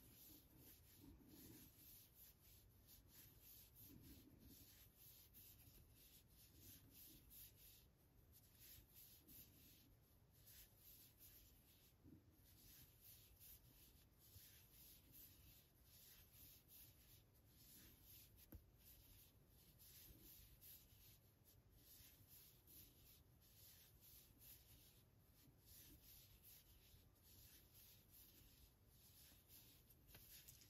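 Near silence with faint, repeated soft rustling and rubbing of a double-ended Tunisian crochet hook and wool-blend yarn as stitches are worked by hand, pulling the yarn through the loops.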